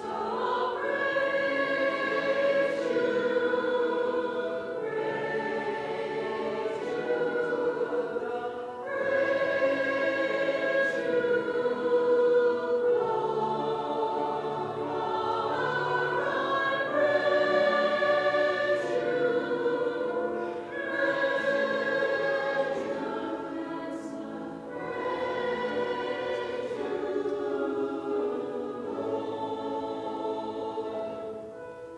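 Mixed-voice church choir singing, in long sustained phrases broken by a few short pauses.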